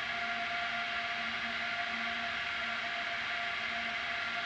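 Steady hiss with a constant low hum tone and a higher hum tone: the open line of the launch communications loop, no one talking on it.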